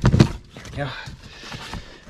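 A few sharp clicks and knocks as a plastic ATV body panel is worked loose by hand. These come in the first moment, followed by quieter handling.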